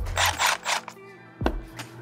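A cordless drill briefly driving the ground screw on an electrical receptacle, a short scraping burst of under a second, over background music. A single click follows about a second and a half in.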